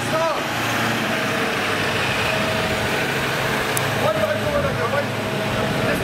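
Steady motor hum, with a few brief distant voices at the start and again about four seconds in.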